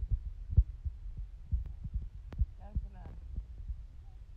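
Fingers rubbing and knocking on a phone's microphone: muffled, irregular low thumps and rumble that bury the sound around it, with faint voices underneath.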